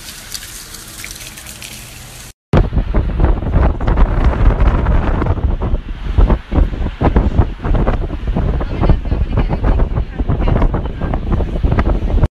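Water running from an outdoor tap for about two seconds. Then, after a brief cut, loud wind buffeting the phone's microphone while the camera moves.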